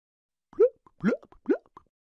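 Three short rising 'bloop' sound effects, about half a second apart, like water drops or bubbles popping, used as a transition jingle.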